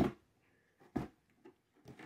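A few faint clicks and knocks as a small Lenovo ThinkCentre M700 mini desktop's case is handled and turned over.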